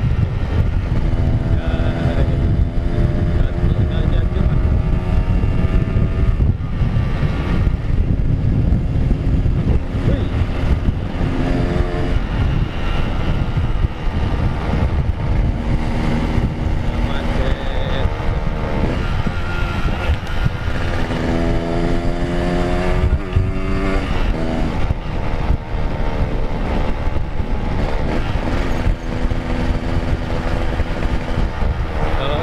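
Yamaha RX-King two-stroke single-cylinder engine running while the bike is ridden, its note coming and going and rising with the throttle in a run of revs about two-thirds of the way through, over a steady rumble of wind noise.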